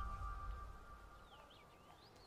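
Background music's held notes fading away, then faint birds chirping: short calls sliding up and down.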